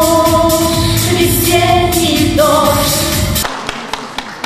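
A woman singing held notes into a microphone over music with a steady beat. The music stops suddenly about three and a half seconds in, and scattered hand claps follow.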